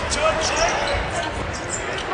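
A basketball dribbled on a hardwood court, a few bounces spread over the two seconds, heard against the open sound of a large arena.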